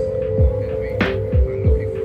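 Background electronic music: a steady held synth note over deep booming bass-drum hits that drop in pitch, with a sharp bright hit about every second and a quarter.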